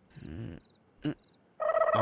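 A short vocal 'aah' and a brief second vocal sound over faint cricket chirps. About one and a half seconds in, film background music with bowed strings starts, with a voice over it.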